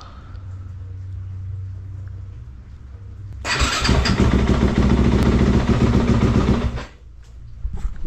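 2020 Yamaha YZ250F's single-cylinder four-stroke engine being electric-started on its stock battery: about three seconds in, the starter cranks for about a second, the engine catches and runs loudly for about three seconds, then stops suddenly.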